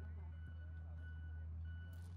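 Heavy construction machinery running at a distance: a steady low engine hum with a thin, steady high-pitched tone over it that breaks off briefly past the middle.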